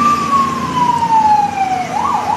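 Siren wailing: one long tone that glides slowly down in pitch.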